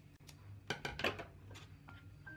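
Scissors cutting a yarn tail: a quick run of four or five sharp blade clicks a little past halfway in.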